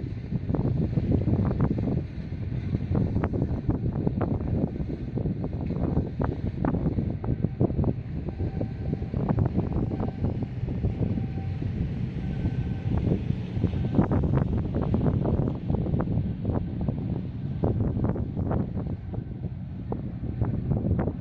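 Wind buffeting the microphone in irregular gusts, a continuous low rumbling noise.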